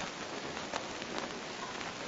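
Steady hiss with a few faint crackles in a pause of the speech: the background noise of an old analog recording.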